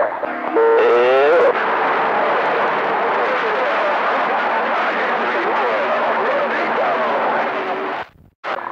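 CB radio receiver on channel 28 carrying heavy static from a weak long-distance skip signal, with faint garbled voices of distant stations buried in the hiss. A short, clearer voice comes through in the first second and a half before the static takes over.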